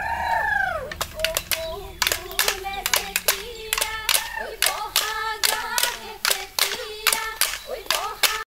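A group of women singing a Bihu song while sharp wooden clacks of split-bamboo toka clappers keep an uneven beat, a few a second, starting about a second in.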